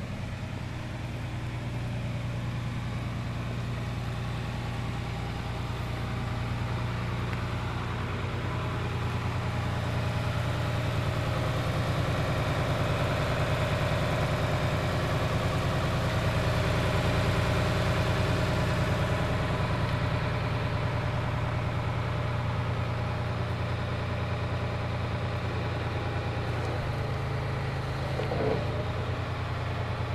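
Farm tractor's engine idling steadily, growing louder toward the middle and easing back. A brief faint sound is heard near the end.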